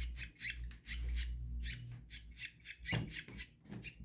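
Budgerigar chick giving a quick series of short, high calls, about four a second, while it is held in the hand.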